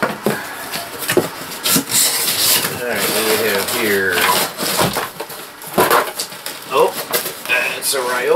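Large cardboard shipping box being opened by hand: its end flaps pulled, scraped and torn open, with rustling and several sharp knocks of cardboard.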